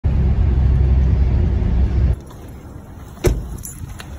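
Loud low rumble of a moving vehicle heard from inside its cabin, cutting off suddenly about two seconds in. It is followed by quieter outdoor sound with one sharp knock a little after three seconds.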